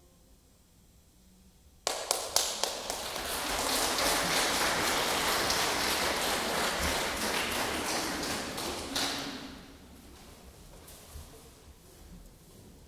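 Audience applauding after a string quartet movement: a brief hush, then clapping breaks out suddenly about two seconds in, holds for several seconds and dies away near ten seconds.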